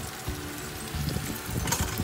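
Wooden spatula pushing and scraping vegetables across pork chops in a nonstick frying pan, with a short, sharper scrape near the end.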